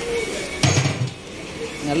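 Large metal cooking pots clanking as they are handled in a busy kitchen, with one loud clatter a little over half a second in and voices in the background.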